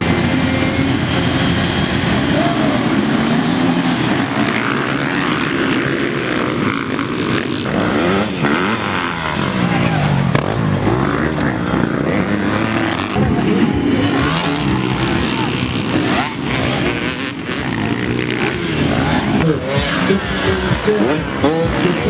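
Motocross dirt bike engines revving and running, several at once, their pitch rising and falling again and again as the throttles are opened and closed.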